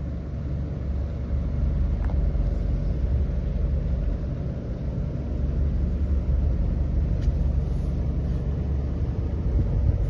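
Motorboat engine running steadily while the boat is underway: a deep, even drone that gets a little louder after about a second and a half.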